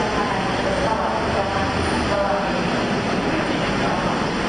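Steady vehicle engine noise with indistinct voices of people talking.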